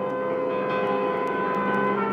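Experimental music: several sustained tones held together in a dense, dissonant chord, with a new lower tone entering near the end.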